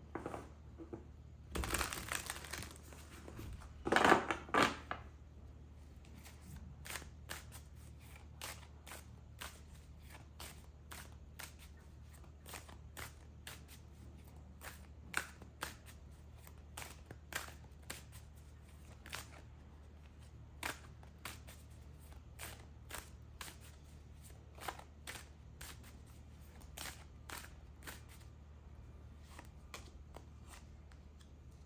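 A deck of tarot cards being shuffled by hand: two louder rustling bursts in the first five seconds, then a long run of soft card clicks, roughly two a second, over a low steady hum.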